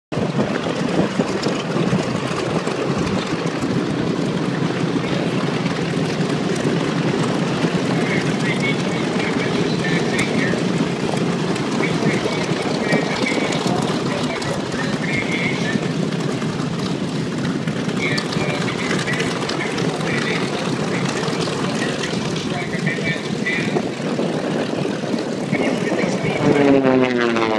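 Piston engines of WWII warbirds running on the ramp: a steady, dense drone with propellers turning. Voices talk faintly in the background.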